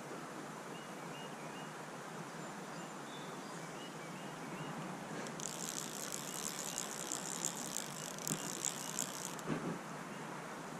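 Steady rush of creek water and wind on the microphone, with a few faint high chirps. About halfway through, a rough, high-pitched rasp comes in, lasts about four seconds and stops, followed by a brief soft knock.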